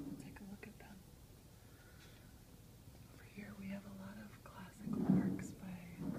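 Soft, whispered speech in a few short phrases, quiet for the first three seconds and then coming in twice near the end.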